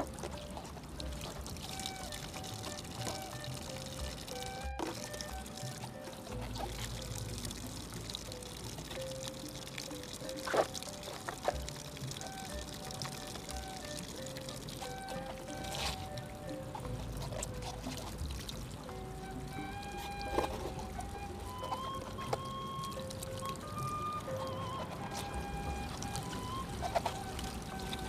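Water running steadily from a bamboo spout and pouring over a cabbage head as it is washed, with a slow, gentle music melody laid over it. A few sharp taps stand out now and then.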